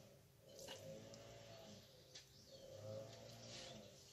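Near silence with two faint drawn-out animal calls, each about a second long, and a few soft clicks.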